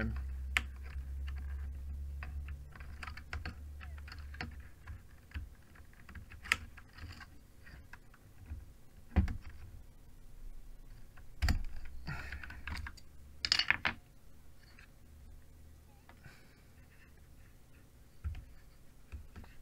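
Scattered, irregular keystrokes and clacks on a GammaKay LK67 mechanical keyboard fitted with Feker Panda switches. There are a few sharper knocks around the middle and a quick cluster of clicks about two-thirds of the way through.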